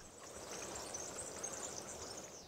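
Faint outdoor ambience: a steady, high-pitched trill over a low hiss.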